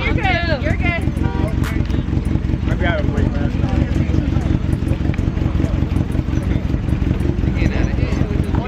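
Several people's voices talking, words unclear, with a short stretch of talk at the start, a few words about three seconds in, and more near the end. Under them runs a steady low rumble throughout.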